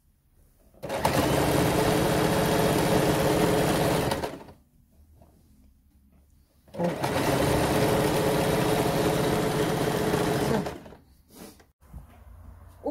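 Electric sewing machine stitching a seam through knit velour fabric in two steady runs of about three to four seconds each, stopping in between.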